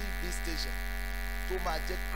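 Steady electrical mains hum with a stack of even, buzzing overtones, carried on the sound-system recording, with a man's voice speaking briefly over it twice.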